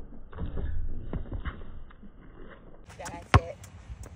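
Basketball bouncing on an outdoor hard court after a dunk: a string of irregular thuds in the first two and a half seconds. About three seconds in, a voice is heard and a single sharp bounce stands out as the loudest sound.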